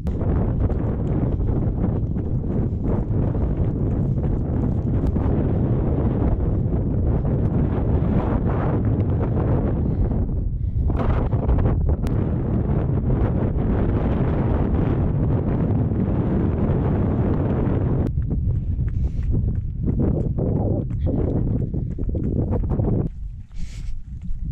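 Wind buffeting a body-worn camera's microphone while running, with rhythmic footfalls on a gravel track through it. The wind noise drops away shortly before the end.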